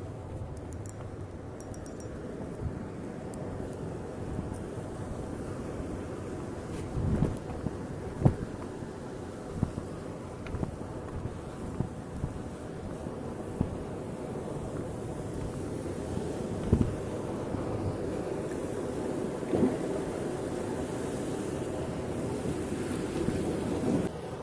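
Wind rumbling on the microphone over the steady rush of sea surf breaking on rocks, with a few short low thumps spread through.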